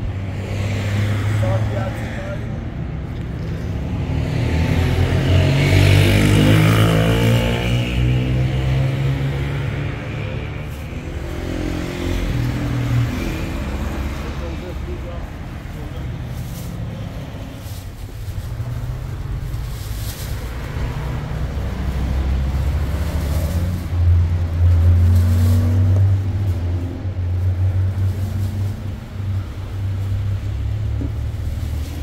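Road traffic passing close by: a steady low engine rumble, with vehicles going past louder about five seconds in and again near the end, and voices in the background.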